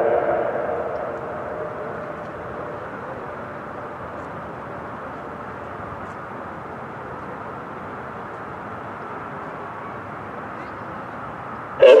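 The echo of the Whelen WPS-2909 siren's voice message dies away over the first two seconds, leaving steady outdoor background noise with no clear pattern. The siren's voice starts again right at the end.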